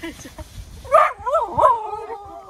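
Excited border collie whining and yelping in greeting, with a few high cries that rise and fall in pitch in the second half, the loudest about a second in.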